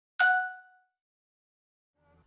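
A single bell-like ding, struck once just after the start and ringing out in under a second.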